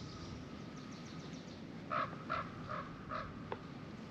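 A bird calling four times in quick succession, starting about halfway through, after a fast high twittering from a smaller bird near the start. A single short tap follows the calls.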